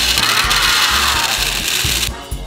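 Upbeat background music with a steady beat, with a loud noisy layer like crowd cheering laid over it that stops abruptly at the end.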